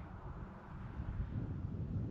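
Wind buffeting the microphone: a low rumble that grows a little louder toward the end.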